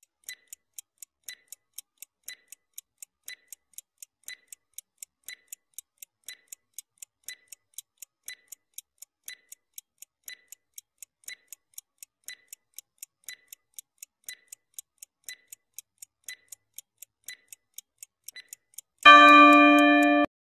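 Countdown-timer sound effect: a clock ticking evenly, several ticks a second with a stronger tick once each second. Near the end a loud ringing tone sounds for about a second as the time runs out.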